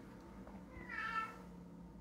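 A faint, short high-pitched cry, like an animal's call, heard once about a second in and lasting under a second.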